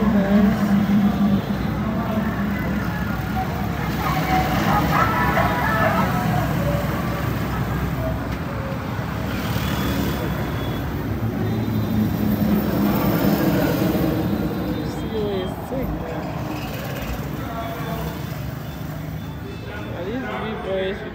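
Voices talking over a steady low engine hum.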